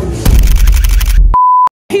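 About a second of loud hip-hop beat with heavy bass, cut off by a single steady high beep lasting about a third of a second, then a moment of dead silence.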